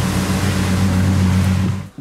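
Ferrari FF's 6.3-litre V12 engine running steadily at low revs, a deep, even drone that cuts off just before the end.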